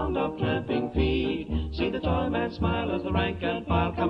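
A British dance orchestra on a 1929 recording playing an instrumental passage, with a strong bass beat about twice a second. The sound has almost no top end, as on an old record.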